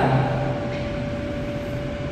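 Steady background noise with a thin, steady hum held at one pitch, in a pause between spoken phrases.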